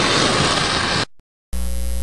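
TV static hiss for about a second, cutting off suddenly. After a short silence, a steady low hum starts about one and a half seconds in.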